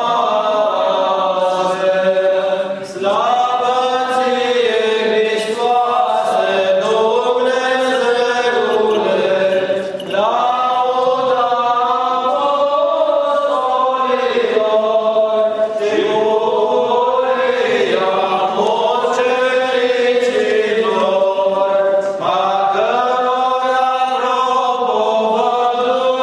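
Orthodox liturgical chant from the wedding service: voices singing long, drawn-out, gliding phrases, with short breaks between phrases.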